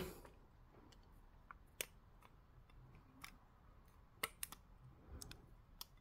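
A handful of faint, sharp plastic clicks as a CPU is pressed and clipped into its black plastic LGA 3647 carrier.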